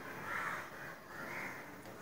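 Faint repeated animal calls, likely a bird, two of them about a second apart.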